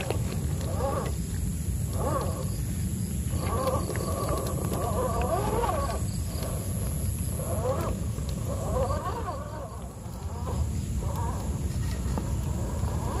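RGT EX86100 V2 scale RC crawler's electric motor and gear train whining in short throttle bursts, the pitch rising and falling as it climbs wet rocks, with brief pauses between bursts. A steady low rumble runs underneath.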